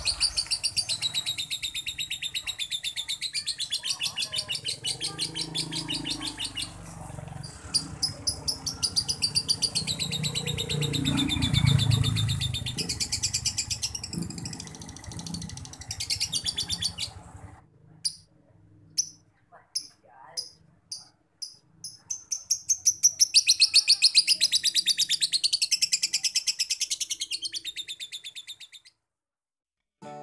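Male lovebird chattering in fast, high, unbroken runs: one long run of about seventeen seconds, a few separate chirps, then a second long run. Such long non-stop chattering is what keepers call konslet, a sign of a male in strong breeding condition (birahi).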